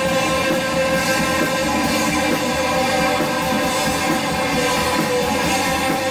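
Rock band playing live: electric guitar, bass guitar and drum kit in an instrumental passage, steady and loud.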